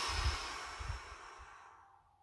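A man's long, slow exhale through pursed lips: a breathy hiss that fades out near the end, with a few soft puffs of breath hitting the microphone.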